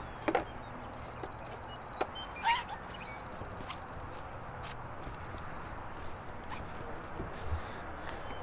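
Steady outdoor background noise with a few short clicks and knocks, broken three times by short runs of rapid, high-pitched electronic beeping.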